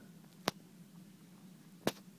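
Two short, sharp clicks about a second and a half apart, over a faint steady hum.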